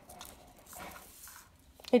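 Faint rustling and soft clicks as plastic curling ribbon is pulled off its spool and handled, with a brief louder rustle about a second in.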